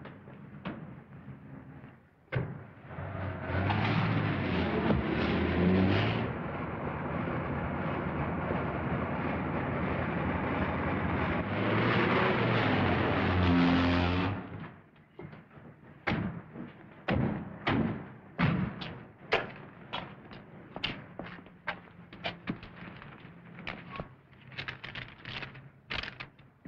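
Old car engines and tyre noise, rising and falling in pitch as a car drives off and a police car pulls up. The sound stops abruptly about fourteen seconds in. Afterwards come scattered sharp clicks and knocks.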